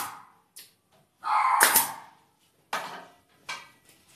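Pneumatic brad nailer firing pins into a cedar-wood bird-cage frame: one loud sharp shot about a second and a half in, then two fainter knocks near the end.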